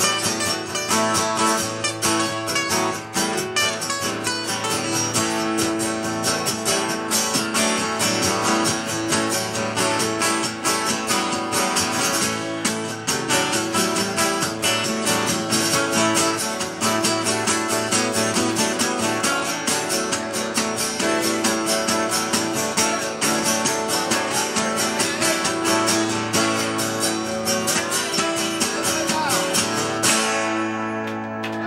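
Three acoustic guitars strummed together in a steady, fast rhythm: an instrumental passage of a live song, with no singing.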